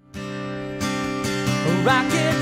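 Acoustic guitar strummed, its chords ringing on, with a stronger strum about a second in. Near the end a singing voice comes in, sliding up into a note.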